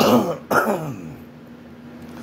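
A man clearing his throat in two short, loud bursts about half a second apart, each dropping in pitch.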